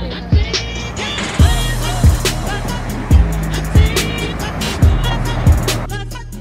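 Background music with a deep, steady beat a little under twice a second over sustained bass notes and a melody.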